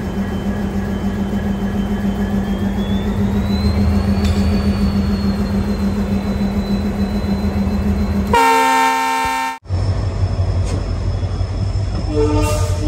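Diesel locomotive idling with a steady low hum and a faint whine that rises in pitch about three seconds in. Near the end it sounds a loud horn blast of about a second, which cuts off abruptly, followed by the low rumble of the train under way.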